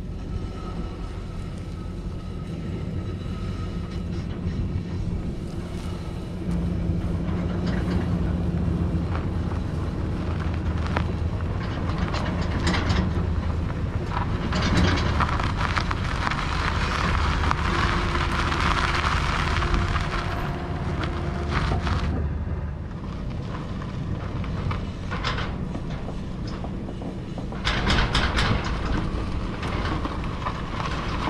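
Empty utility trailer being towed, heard from close beside one of its wheels: tyres rolling over grass and then gravel with a steady low rumble and the clatter of the trailer's frame. The rumble grows louder a few seconds in, and a few sharp knocks come near the end.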